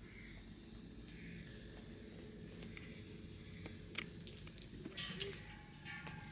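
Quiet shop room tone: a faint steady low hum with a few light clicks and handling knocks, two of them sharper about four and five seconds in.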